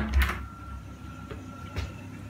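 Wooden aquarium cabinet door being pulled open: a low thump and handling rumble at the start, then a small click near the end, over a faint steady high tone.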